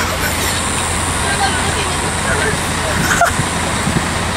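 Steady road-traffic noise with faint voices of people talking in the background.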